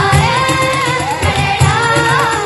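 Children's choir singing a song together into stage microphones, over an accompaniment with a steady low beat.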